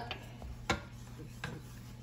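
A few light knocks, the sharpest about two-thirds of a second in, as a wooden spatula is taken up and set into a small saucepan of melted butter and hot sauce to stir it.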